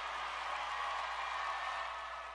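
Faint applause from a small number of people, fading out gradually.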